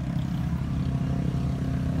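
Road traffic, very noisy: a steady low drone of vehicle engines from passing traffic.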